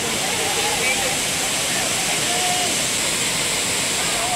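Steady rush of water from a waterfall and fast-flowing river, with faint voices of people underneath.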